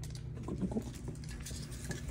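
Soft patter and scuffling of a cat moving and being handled on a hard floor, with a few short, faint sounds about half a second in, over a steady low hum.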